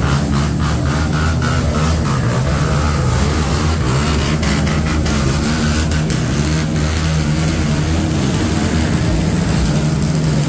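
A loud, steady, low engine hum that holds one pitch throughout, with a few light clicks and knocks over it.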